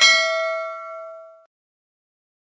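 Notification-bell sound effect: a single bell ding ringing out and fading away within about a second and a half.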